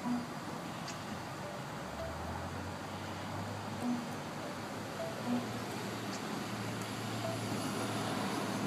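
Steady background noise and a low hum at a Diebold ATM while a withdrawal goes through, with a few faint short beeps as touchscreen selections are made.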